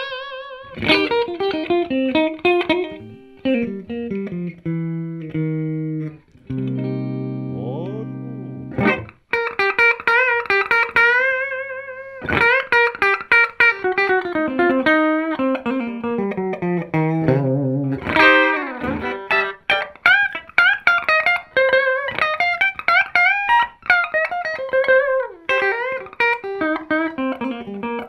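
A PRS SE Santana Abraxas electric guitar played through a Fender Twin Reverb amp set to a clean tone. It plays single-note lead lines with vibrato and falling runs, with a few held low notes ringing together around seven seconds in.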